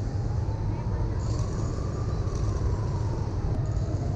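City street traffic: a steady low rumble of passing vehicles, with a faint tone that slowly rises and then falls.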